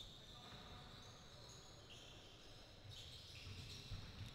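Near silence: faint sound from a basketball game in a sports hall, with thin high tones and a few soft bumps in the second half.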